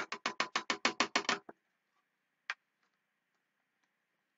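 A quick run of light plastic taps, about eight a second, as a craft media tray is knocked over a clear plastic box to tip loose sparkle cuts back in. The taps stop about a second and a half in, and one more single click comes about halfway through.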